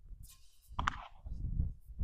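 Wind buffeting the microphone in uneven gusts of low rumble, with faint rustling as hands handle and press on a fabric-covered ballistic armor plate.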